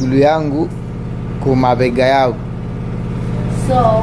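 A steady low engine hum runs under short bits of speech and grows slightly louder over the last second or so.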